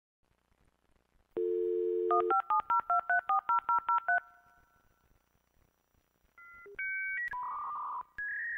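Dial-up modem connecting to AOL: a steady telephone dial tone, then a quick run of about eleven touch-tone digits at about five a second. After a short pause, the modem's handshake tones begin near the end, stepping from one pitch to another.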